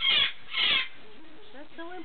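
Moluccan cockatoo screeching in an excited display: two loud, harsh screeches in the first second, about half a second apart, continuing a rapid series; softer voice-like sounds follow near the end.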